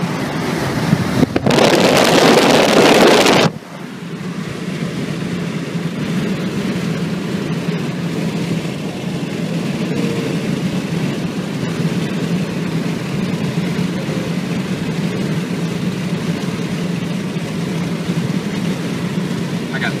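Steady road and engine noise inside a car cruising on a highway, with a constant low hum. For the first few seconds a loud rush of wind noise covers it and cuts off abruptly about three and a half seconds in.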